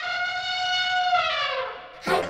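Cartoon elephant trumpet call: one long call that holds steady for about a second, then slides down in pitch and fades away.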